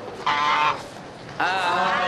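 Domestic goose honking: a short honk about a quarter second in, then another loud call starting near the end.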